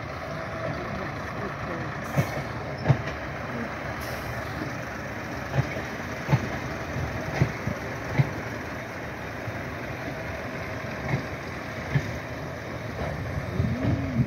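Heritage diesel multiple unit passing slowly: a steady rumble, with its wheels knocking over rail joints in pairs several times.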